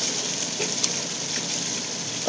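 Steady rushing and splashing of water from a backyard artificial waterfall.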